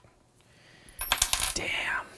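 A short burst of small metallic clicks and rattles starting about a second in, like hard parts knocking together, as a metal-caged camera rig is handled and moved.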